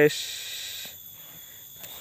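A high hiss that fades out over the first second, over a steady high-pitched chorus of forest insects; a faint click near the end.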